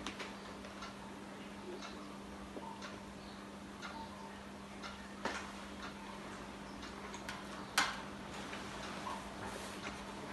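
Quiet room with a steady low hum and a few soft clicks, the loudest about eight seconds in as a small pot is set down on a tray.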